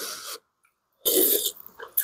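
Ramen noodles being slurped: a softer slurp at the start and a short, loud slurp about a second in, followed by a few small mouth clicks.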